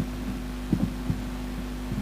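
Steady low electrical hum from the public-address sound system, with a few soft low thumps about a second in and again near the end.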